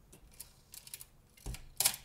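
Faint, scattered clicks and handling noise from a Minolta SRT101 film camera opened for loading, with film freshly engaged on the sprocket teeth, and one louder short sound near the end.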